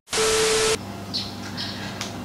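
TV-static glitch transition sound effect: a burst of loud hiss with a steady hum-like tone under it, lasting about half a second. Quiet room tone follows.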